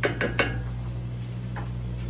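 A wooden spoon knocking several times on the rim of a stainless steel stockpot in quick succession, then one faint tap about a second and a half in, over a steady low hum.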